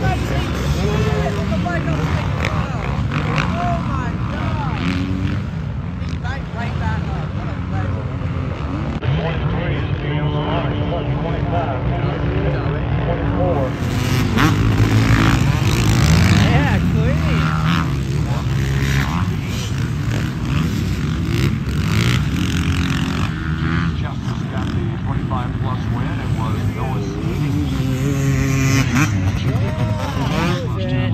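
Several motocross bike engines revving up and down as the bikes race around the track, the pitch rising and falling over and over.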